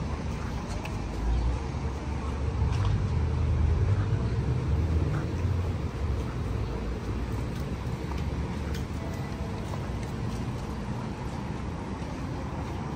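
City street traffic: a steady low rumble of passing cars, swelling louder for a few seconds as vehicles go by about a second in, then settling back.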